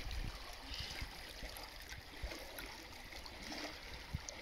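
Shallow river water running steadily.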